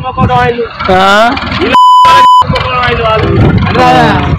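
A steady high-pitched censor bleep, the loudest sound here, cuts in about two seconds in over an elderly man's speech and stops sharply after about two-thirds of a second, masking a word.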